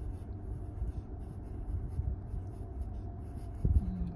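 Graphite pencil scratching on sketchbook paper in short, irregular strokes as small spot outlines are drawn, with a single louder knock near the end.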